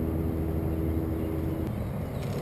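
Steady, low engine hum with one held tone that cuts off shortly before the end.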